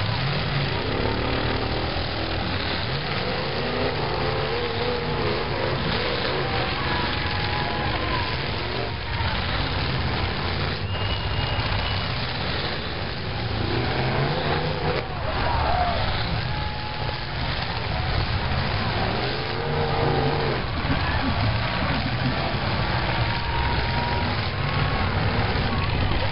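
Several demolition derby cars' engines running and revving hard, rising and falling in pitch, as the cars push and spin their wheels in the dirt, with a few sharp knocks from collisions. Voices carry over the engine noise.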